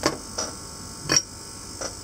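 Four short, sharp clicks, about half a second apart and the loudest just past the middle, from small metal hand tools such as side cutters being handled at the workbench.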